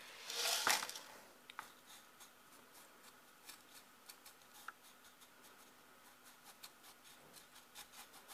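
Mineral substrate granules poured from a plastic measuring jug into a plant pot, a short rattling rush in the first second. After that, faint scattered clicks as fingers press the granules down around the stem.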